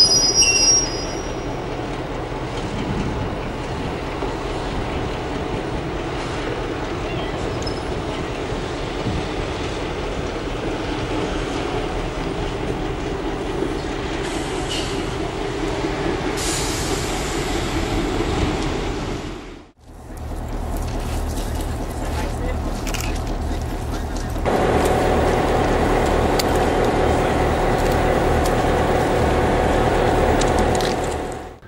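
Diesel engine of an Irish Rail 121 class locomotive, an EMD two-stroke, running with a brief high squeal at the very start. After a sudden break the engine runs steadily, then its note steps up and gets louder about two-thirds of the way through.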